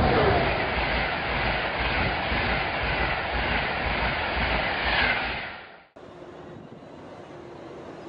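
A train rushing past at speed: a loud, steady rush of wheel and rail noise, with a few falling pitches as it goes by. It cuts off about six seconds in and gives way to a much quieter background hum.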